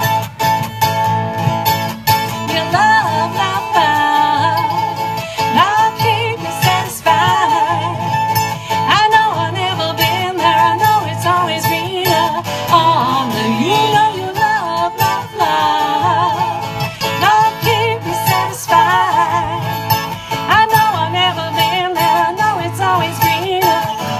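Live acoustic band playing a country-style tune: strummed acoustic guitar and other plucked strings under a wavering, sliding lead melody.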